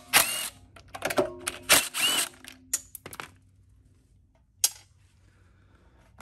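Cordless DeWalt impact driver with a 10 mm socket running in several short bursts, loosening the nuts that hold the air filter box on a small engine. Near five seconds there is one sharp click.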